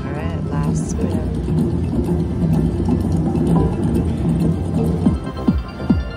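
Jungle Wild slot machine's electronic music and sound effects during its free-spin bonus: a short warbling chime about the start, then a steady repeating melody.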